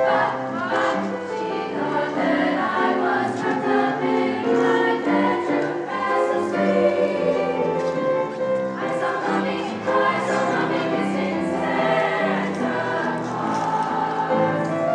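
High school treble choir of female voices singing in parts.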